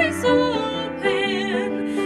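A woman sings a hymn solo, holding notes with a wide vibrato about halfway through, over grand piano accompaniment.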